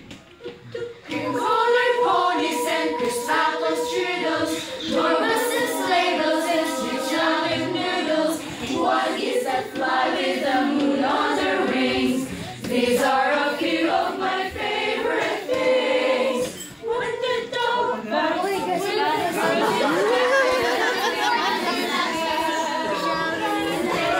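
Children's choir singing unaccompanied in held, sustained phrases, with a brief break about two-thirds of the way through.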